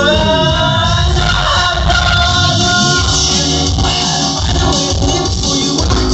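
Loud live concert music heard from within the crowd, with heavy bass under it. A sustained tone slides down in pitch in the first second and climbs back up around three seconds in.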